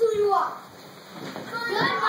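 Children's voices calling out and talking: one short call with a gliding pitch at the start, a quieter stretch, then several voices together near the end.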